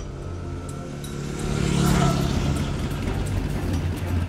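Dirt-bike engine sound effect pulling in, growing louder to a peak about two seconds in, then easing off as it arrives.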